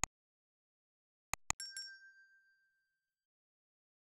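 Mouse-click sound effects: one click at the very start and a quick double click about a second and a half in. A bright notification-bell ding follows, struck twice, and rings out for about a second and a half.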